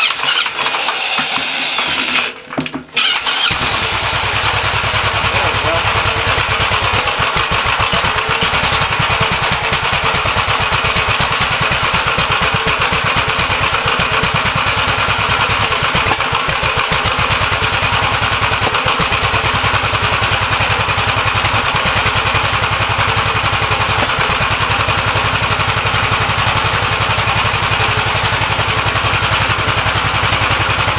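A half-inch electric drill spins the crankshaft of a Gravely L tractor's single-cylinder engine with a falling whine for about two seconds. After a brief pause the engine catches, about three seconds in, and settles into steady running with the choke on.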